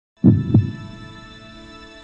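Logo intro sting: two low, heartbeat-like thumps about a third of a second apart, then a sustained synthesizer chord that slowly fades.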